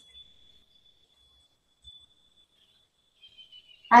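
Near silence: room tone with a faint steady high-pitched whine and one faint soft knock about two seconds in.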